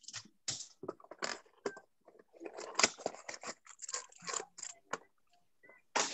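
Cardboard trading-card hanger box being torn open and the cards' plastic wrapper crinkling: an irregular run of short rustles and tears that dies away about a second before the end.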